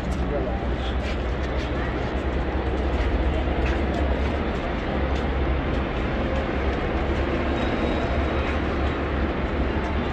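Busy city street ambience: a steady low rumble of traffic with indistinct voices of people around.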